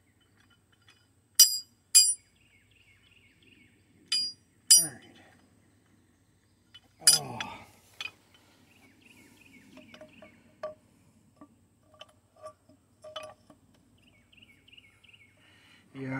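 Sharp metallic clinks of steel tools and a bearing puller being handled and fitted, four bright ringing clinks in the first five seconds, then scattered fainter knocks.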